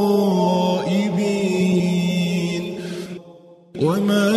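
Quran recitation: a single voice chanting slowly in a melodic tajweed style, holding long drawn-out notes at the close of a verse. The voice fades away about three seconds in, and after a brief silence the next phrase begins on a rising note just before the end.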